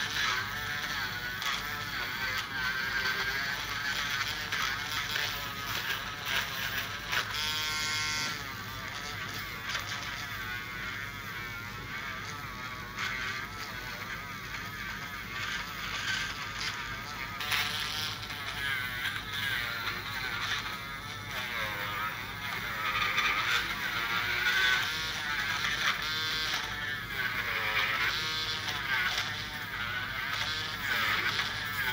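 Podiatry nail drill with dust extraction grinding down a thick fungal toenail: a steady electric buzz with a whine that wavers in pitch as the burr bites into the nail.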